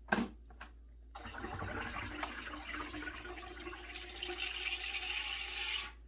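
Home soda maker carbonating a bottle of water: a sharp click, then a steady hiss of gas bubbling through the water for about four and a half seconds, cutting off suddenly near the end.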